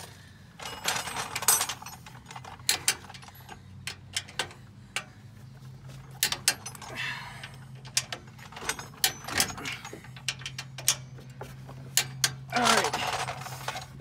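Irregular metallic clicks and clinks of a wrench and socket on the Jeep's steering box mounting bolts as they are brought to torque, over a low steady hum.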